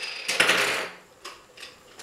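Small objects being handled on a workbench, with the bandsaw switched off. A ringing clink dies away at the start, a short scraping sound follows about half a second in, and then a few faint taps.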